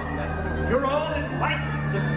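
Nighttime castle show soundtrack played over park loudspeakers: a theatrical character voice swooping up and down in pitch over music, with a steady low hum underneath.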